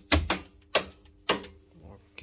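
Sharp mechanical clicks of circuit breakers being switched in an electrical control panel as tripped pump circuits are reset: four clicks, two close together near the start, then one about every half second, over a faint steady electrical hum.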